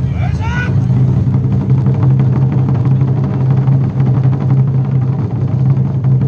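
Taiko drums played in a fast, continuous roll: a steady low rumble under dense strokes. A short rising shouted call cuts in about half a second in.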